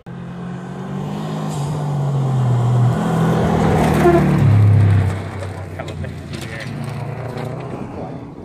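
A rally car at full throttle on a gravel road, its engine note stepping through gear changes as it closes in. It is loudest as it passes, then drops away suddenly, followed by scattered sharp ticks of flung gravel.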